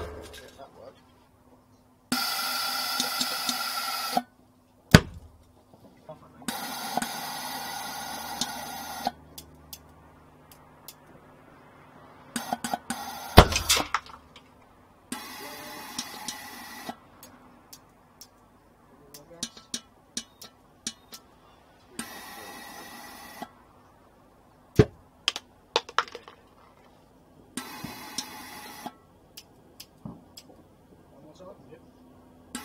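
Repeated test firings of a homemade gas-fired combustion chamber: spells of gas hissing in through a solenoid valve, then sharp clicks and combustion bangs. The loudest and deepest bang comes about 13 seconds in, with smaller ones about 5 and 25 seconds in.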